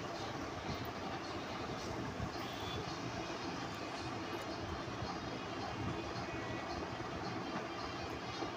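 Steady engine and road noise of a vehicle in motion.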